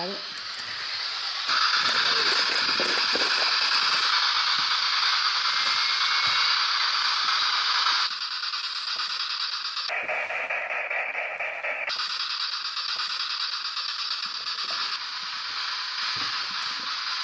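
Steady electronic static hiss from a white-noise device run for ghost-hunting voice sessions, meant to let voices come through the noise. It grows louder about a second and a half in and abruptly changes tone several times, most clearly for a couple of seconds around the middle.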